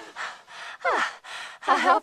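A cartoon woman's sigh, distorted by video audio effects: several short breathy exhalations with a falling sweep in pitch near the middle. Speech starts near the end.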